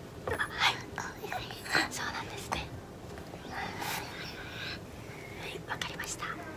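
Soft whispering and quiet voice sounds in short, broken bits.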